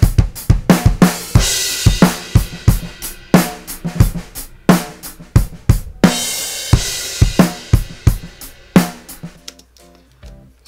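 Recorded acoustic drum kit played back: a steady groove of kick, snare and hi-hat with a crash cymbal about a second in and again about six seconds in, the AEA R88 stereo ribbon room mic blended in for depth of the room. The playing stops with a last hit about a second before the end.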